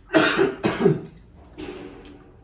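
A man coughing into his elbow: two hard coughs in quick succession in the first second, then a weaker one.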